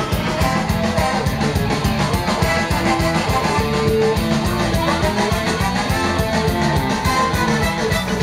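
Live rock band playing: guitar over bass and drums, with a steady, fast beat.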